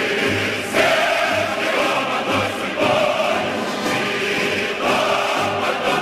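A choir singing with orchestral accompaniment and a low bass note recurring about once a second.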